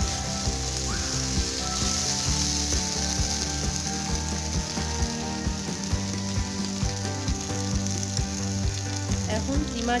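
Minced beef and diced potato filling sizzling in oil in a nonstick frying pan, stirred and scraped with a slotted plastic spatula. Frequent small clicks of the spatula against the pan break through the steady sizzle.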